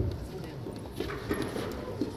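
Foil fencers' footwork on the piste: quick steps and stamps, a sharp thump right at the start and another over a second in, over a murmur of voices in a large hall.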